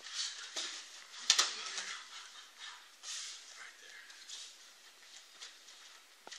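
Two people drilling a hip-toss takedown and strikes on a padded mat: a sharp slap a little over a second in, with smaller knocks around it, then a run of short rustles of clothing and bodies moving on the mat that dies away.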